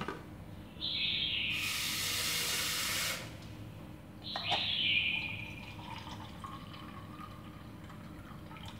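Water poured from a plastic jug into a tin can standing in a steel pot, in two pours: a longer one about a second in, lasting about two seconds, and a shorter one a little after four seconds with a slightly falling pitch. It is the topping up of the water for a half-hot, half-cold water bath.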